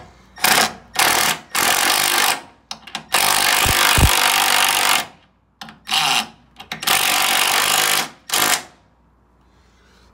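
Cordless impact driver hammering a bolt into an engine mount bracket in a series of bursts, about seven in all. The longest, nearly two seconds, comes in the middle, and the trigger is released between bursts.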